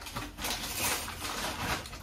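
Plastic crinkling and rustling, with light handling knocks, as plastic bottles of water are unpacked; the crackle is densest about half a second to a second in.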